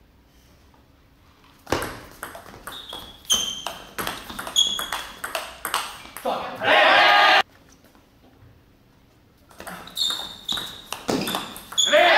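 Two table tennis rallies: the ball clicks off the bats and the table in quick irregular strokes, with short shoe squeaks on the hall floor. Each rally ends in a loud shout from a player, the first about halfway through and the second near the end.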